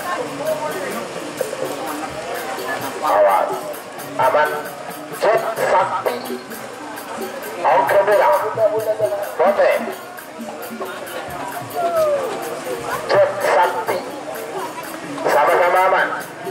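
Saronen (Madurese shawm) and drum music of a bull-race ensemble: loud, wailing reedy phrases that swell and fade every second or two, some gliding downward, over a steady background of crowd voices.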